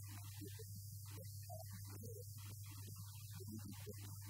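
Steady electrical mains hum in the microphone feed, with a faint, broken-up voice under it.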